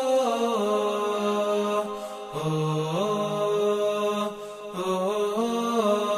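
A solo male voice chanting a slow, melodic recitation in long held notes that step up and down in pitch. It breaks briefly for breath about two seconds in and again past four seconds.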